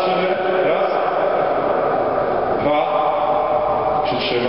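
An indistinct man's voice, with no clear words.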